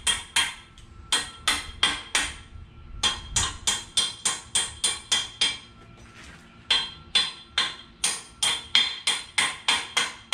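Hand hammer striking the steel rear axle housing of a 1955 Chevy to knock off leftover brackets: quick, sharp metal blows about three a second, each with a ringing tone, in runs with two short pauses.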